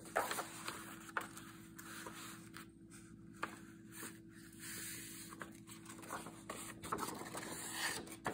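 Sheets of cardstock and paper being handled: soft rustling and sliding with scattered light taps and clicks as pages are turned and tucked into a journal, over a faint steady hum.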